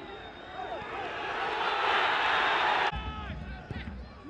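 Football stadium crowd roaring as a shot goes in on goal, swelling over about two seconds and cutting off suddenly about three seconds in.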